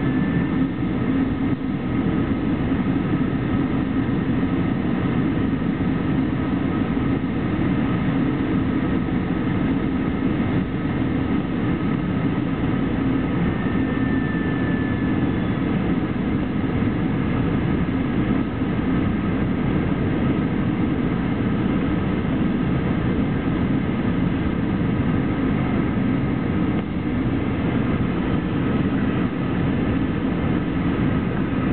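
Steady cabin noise of an Airbus A321 descending on approach to land: the drone of the wing engine and the rush of air, heard from inside the cabin.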